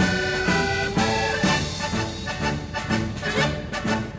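Instrumental passage of a song between sung verses: a band playing a lively melody with a steady beat, no singing.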